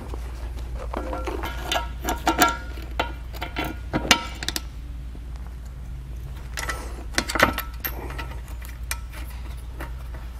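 Metal clinks, knocks and rattles from a plate compactor's steel frame and base plate being handled while a urethane protective mat is fitted under it. The clinking comes in several short clusters, about two, four and seven seconds in.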